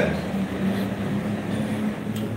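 A steady low hum, a single held tone, over faint room noise.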